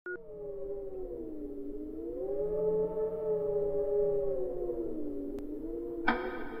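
An eerie wailing sound effect: one long, smooth tone that sinks, rises about two seconds in, holds, then sinks again near the end, with a faint tick just before it ends.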